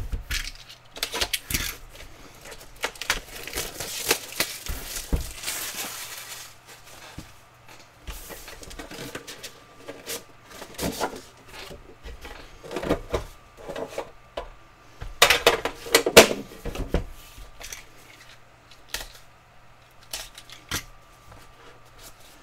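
Hands handling a trading-card hobby box and its packaging: the box sliding and knocking, lid and wrapping rustling, with irregular clicks throughout. The densest rustling comes a few seconds in, and the loudest bursts come about three-quarters of the way through.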